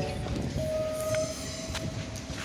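Railway station sound with the low rumble of trains. The last notes of a descending station chime sound at the very start, and a single steady tone comes in about half a second later and is held for over a second.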